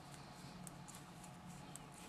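Knitting needles clicking softly and irregularly, a few times a second, as stitches are worked, over a faint low steady hum.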